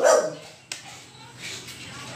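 A one-month-old American Bully puppy gives a single short bark that fades within about half a second, followed by a sharp click.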